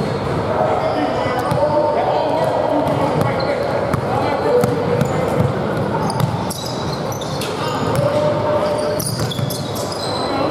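A basketball bouncing on a hardwood gym floor under the echoing chatter of players and spectators, with short high-pitched sneaker squeaks in the second half.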